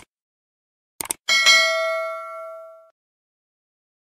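Subscribe-button animation sound effect: a mouse click, a quick double click about a second in, then a bright notification-bell ding that rings out and fades over about a second and a half.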